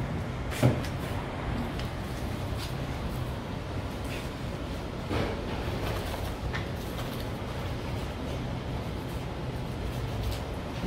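Steady low kitchen hum with a few soft knocks and clicks, the sharpest under a second in, as a whole lamb carcass is cut apart with a knife and shifted about on a counter.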